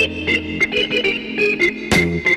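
Organ-led music from a vinyl record: an electric organ plays a quick run of short notes, with a bass line underneath at the start.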